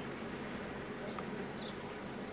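Birds chirping outdoors: short, high chirps that fall in pitch, a few per second, over a steady low hum.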